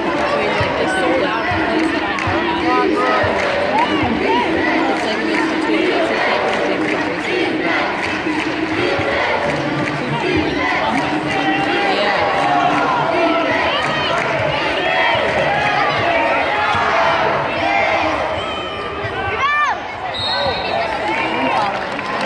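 Arena basketball game heard from courtside: steady crowd chatter with a ball bouncing on the hardwood and sneakers squeaking. A short whistle sounds near the end, ahead of free throws.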